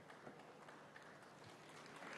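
Near silence: faint room tone of a large hall, with a few faint scattered clicks.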